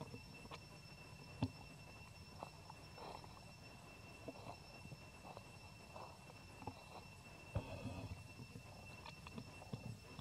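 Macaques moving about on branches and dry leaves: faint scattered clicks and rustles, with a louder knock about a second and a half in and another about seven and a half seconds in, over a faint steady high tone.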